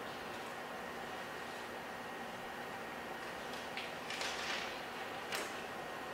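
Steady background hiss with a few brief scratchy strokes between about three and a half and five and a half seconds in, from a diagram being drawn by hand.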